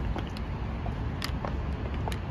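Outdoor ambience: a steady low rumble with a few faint short ticks scattered through it.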